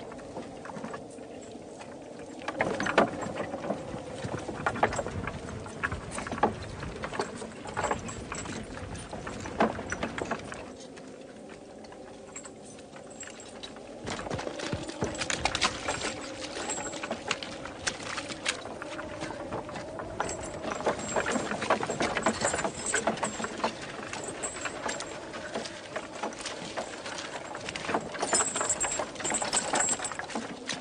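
Horses' hooves and a wooden wagon rattling along a rough road, a dense run of irregular knocks that eases off for a few seconds midway before picking up again.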